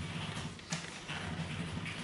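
Plastic body of a cordless handheld vacuum cleaner being handled and turned over: light knocks and rubbing, with a sharper click a little under a second in, over a faint low steady hum.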